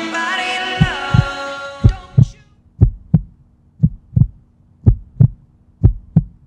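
The song's last sung note fades out over the first two seconds, then a heartbeat sound effect begins: pairs of deep thumps about once a second, over a faint steady hum.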